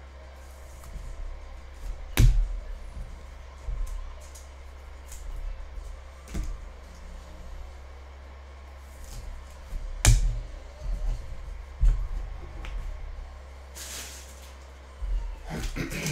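Cards in rigid plastic toploaders being handled and set down on a table: a handful of sharp taps and knocks, the loudest about two seconds in and again about ten seconds in, with a brief rustle near the end, over a steady low hum.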